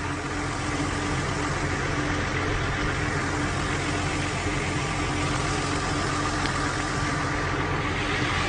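An engine running steadily at idle: an even low rumble with a constant hum over it, unchanging throughout.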